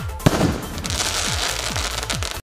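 Golden Crackler aerial firework shell bursting with a sharp bang about a quarter second in. About half a second later a dense crackle of its golden crackling stars follows and keeps going.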